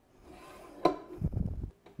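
Handling noise as a telescopic tea towel rack's bracket is set against a cabinet side panel: one sharp knock a little before halfway, then a short, low rumble of shuffling.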